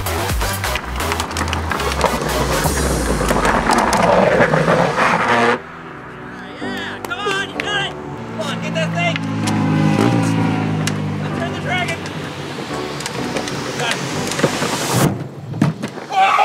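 Upbeat music over the rolling and scraping of a drift trike's hard rear wheels sliding on asphalt. The loud, noisy part drops off suddenly about five and a half seconds in, and the music carries on with pitched vocal sounds over it.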